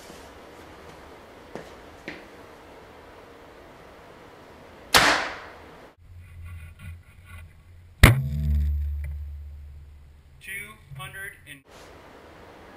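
A 2012 PSE Vendetta DC compound bow, set at about 64.5 pounds, being shot: a sharp snap about five seconds in as the string is released and the arrow flies, then a second sharp crack about three seconds later, followed by a low hum that fades over about two seconds.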